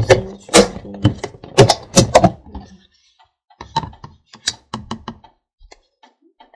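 Hard plastic knocks and clatters as a plastic bowl is dipped into a plastic container of liquid and bumps against its sides: a quick irregular run of knocks in the first half, then a few more around four to five seconds in.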